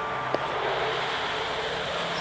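Steady jet-engine noise of a MiG-31 interceptor taking off, with a short click about a third of a second in.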